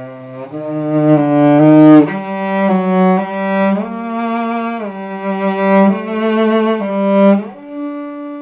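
Cello playing a waltz melody: sustained bowed notes that change every half second to a second, with short slides between some of them.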